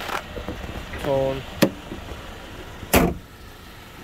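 A truck's hinged front service lid is swung down and shut: a sharp click about one and a half seconds in, then a loud thump near three seconds as it closes, over a steady low rumble.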